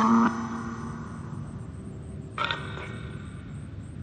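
Necrophonic spirit-box app playing through a phone's speaker: a short pitched, voice-like fragment that cuts off just after the start and another brief one about two and a half seconds in, with a steady hiss between.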